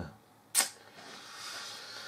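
A single sharp click about half a second in, followed by a faint steady hiss.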